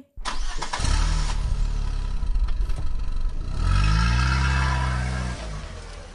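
Vehicle engine sound effect: it starts abruptly and runs with a low rumble, revs up with a rising pitch about three and a half seconds in, holds, then fades out near the end.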